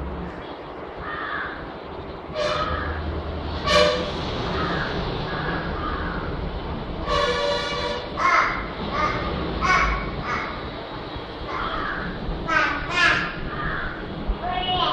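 Crows cawing, a string of harsh calls with a longer one about seven seconds in, over a low steady rumble.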